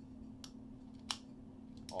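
Three light, sharp metallic clicks spaced roughly two-thirds of a second apart as a Ruger Super Redhawk .480 revolver is handled, over a faint steady hum.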